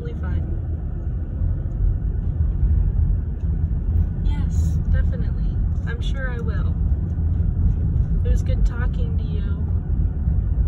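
A car's engine and tyre noise heard from inside the cabin while driving: a steady low rumble that grows a little louder over the first couple of seconds.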